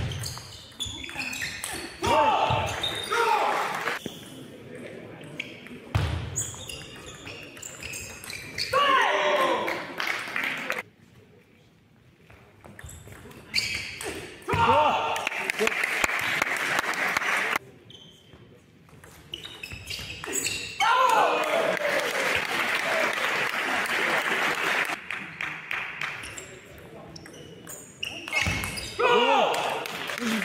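Table tennis rallies in a large hall: the plastic ball clicking quickly back and forth off rackets and table. Each rally ends with a voice shouting, followed by a stretch of applause and cheering.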